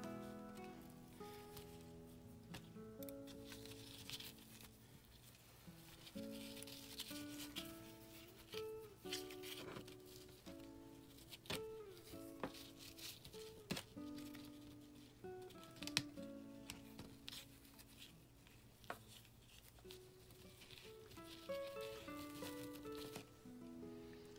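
Soft background music of slow, held notes, over faint rustles and light ticks of ribbon and paper being handled while a ribbon is tied around a paper envelope.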